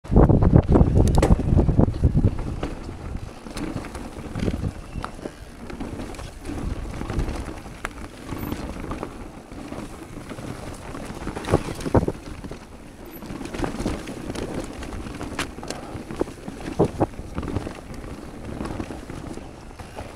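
Wind buffeting the microphone over the rolling tyre noise of an electric mountain bike on a rocky, rooty forest trail, with sharp knocks and clatters as the bike hits bumps. The wind rumble is heaviest in the first two seconds.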